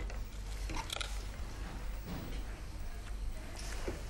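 Faint chewing of sticky, overcooked homemade toffee, with small scattered mouth sounds.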